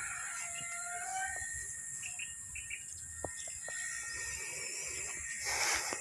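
Rural field ambience: a steady high-pitched drone of insects such as crickets, with a few short faint bird chirps in the first half. A brief rustling hiss comes near the end.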